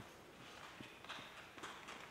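Near silence in a concert hall: faint rustling with a few small knocks and clicks, as an orchestra settles and raises its instruments before playing.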